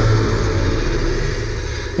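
Deep, steady rumble with a high hiss over it, slowly fading: a sound-effect rumble over a cut to black.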